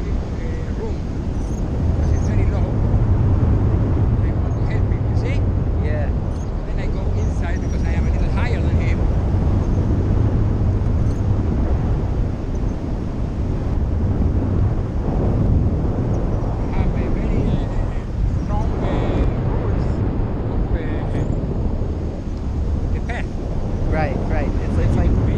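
Wind rushing over an action camera's microphone in flight under a tandem paraglider: a loud, steady low rumble, with indistinct voices now and then.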